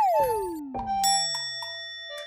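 Cartoon sound effect: a whistle-like tone sliding steadily down from high to low over about two seconds, with a few light taps and a bell-like ding about a second in.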